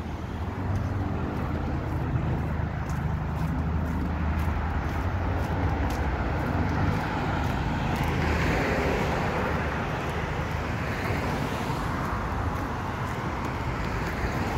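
Road traffic on a busy street: steady engine and tyre rumble, swelling as vehicles pass about eight seconds in.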